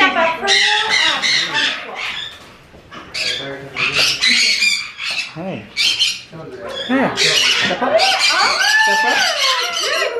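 Green-winged macaw giving harsh, loud squawks in several bouts.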